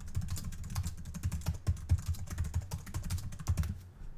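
Fast typing on a computer keyboard: a quick, uneven run of key clicks that stops just before the end.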